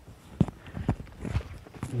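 Footsteps walking on a muddy forest trail, about two steps a second.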